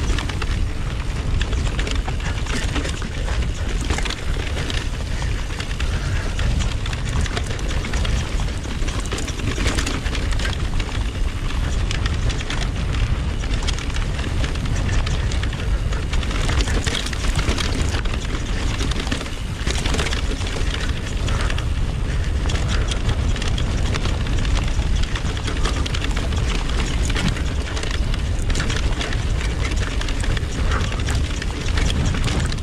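Wind buffeting the bike-mounted camera's microphone as a steady low rumble, with the electric mountain bike clattering and knocking over rocks and ruts in quick, irregular hits.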